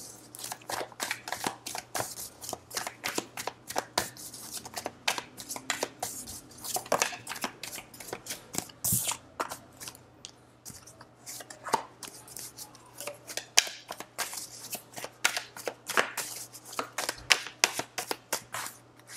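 A tarot deck being shuffled by hand: an uneven run of soft card slaps and clicks, several a second, with a few louder strokes.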